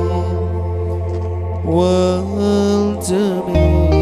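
Sholawat music: a man's voice holds long, wavering sung notes over a low, held accompanying note, with a new sung phrase coming in a little under two seconds in. The low note drops out for a moment near the end and then returns.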